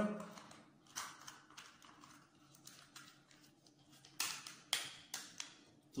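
Small plastic toy camera being opened by hand: a single click about a second in, then four sharp clicks and taps in quick succession near the end.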